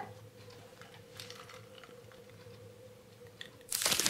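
A person sipping a drink from a clear plastic cup: faint sips and swallows over a low steady hum, with a louder noisy burst near the end.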